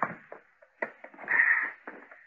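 A man climbing a set of household steps: a single sharp knock a little under a second in, then a brief scrape.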